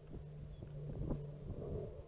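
Quiet low rumble of wind on the microphone with a few light clicks and knocks as hands handle the quadcopter to shut it down.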